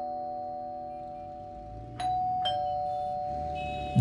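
Doorbell ding-dong chime rung twice. The first chime's ringing fades away, then a second two-note ding-dong sounds about two seconds in, its notes half a second apart, and rings on.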